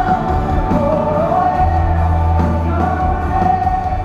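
Live band music in a large arena, heard from the stands: a woman sings long, held notes into a microphone over the band, with a steady bass underneath.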